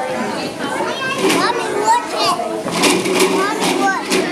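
Children playing: many overlapping young voices chattering and calling out, with several high-pitched excited shouts through the middle and latter part.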